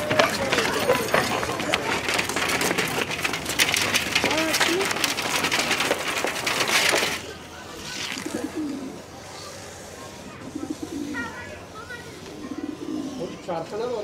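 Loud, busy running of a group of children over a dirt alley: many scuffing footsteps and voices. About seven seconds in it cuts off suddenly to a much quieter alley, where a pigeon coos several times.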